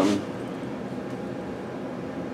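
Steady, even background noise of the room with no distinct events, right after a brief spoken 'um' at the very start.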